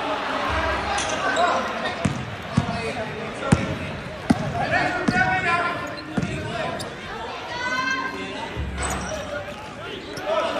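Basketball bouncing on a hard gym floor, a handful of sharp bounces in the middle, with players' voices and shouts echoing around a large sports hall.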